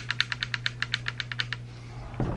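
A rapid, even run of small sharp metallic clicks, about ten a second, from an AK's fire-control group: the newly installed ALG AKT-EL trigger and hammer being worked back and forth in a function check. The clicking stops about a second and a half in.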